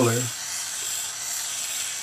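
Small handheld gas torch flame hissing steadily while it heats a silver strip to a dull red to anneal it.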